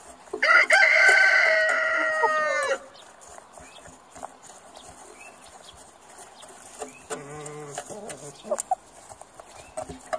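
A rooster crowing once: a loud call of about two seconds near the start, dropping in pitch at its end. A lower, shorter sound follows about seven seconds in.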